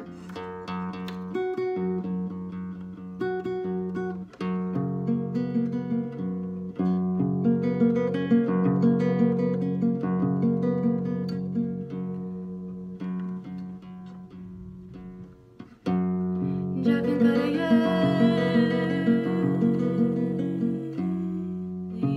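Nylon-string classical guitar fingerpicked in a slow arpeggiated pattern over bass notes. The playing nearly dies away about two-thirds of the way through, resumes louder about a second later, and a woman's singing voice joins near the end.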